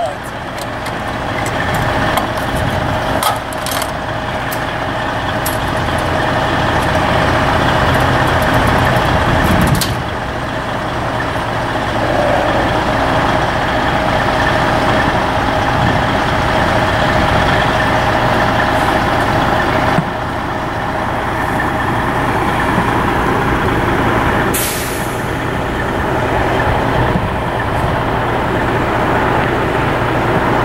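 Semi truck's diesel engine idling steadily, with clicks and clanks from the trailer's side-door latch in the first ten seconds and a short hiss of air about 25 seconds in.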